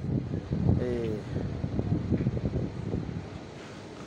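Uneven low rumble of wind on a phone's microphone, with a short voiced hesitation from a man about a second in; the rumble dies down near the end.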